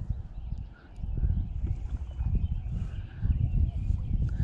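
Low, uneven buffeting rumble on the camera's microphone, with a few faint ticks, dipping briefly about a second in.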